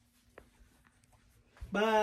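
Near silence with a faint steady hum and a single light click, then near the end a voice calls out loudly, holding one long, level 'bye'.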